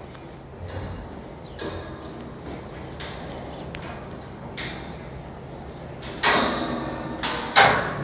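Metal wire-panel stall gates knocking and rattling as horses are let out of their stalls, with irregular knocks and a louder scraping rattle about six seconds in.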